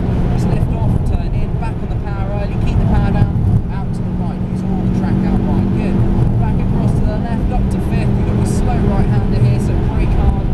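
Ford Focus RS's turbocharged engine pulling steadily at high revs under full throttle, heard from inside the cabin.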